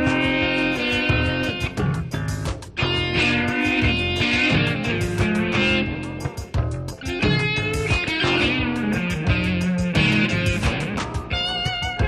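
Instrumental break of a blues-rock song: electric guitar playing over bass with a steady beat, no vocals.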